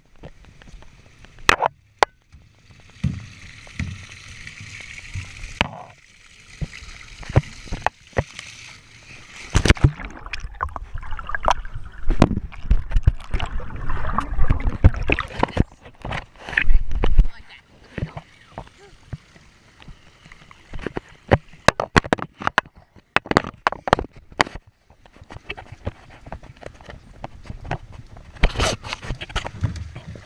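Water sloshing and splashing close around a handheld action camera, heaviest in the middle with a loud low rumble, amid many sharp knocks and bumps of the camera being handled.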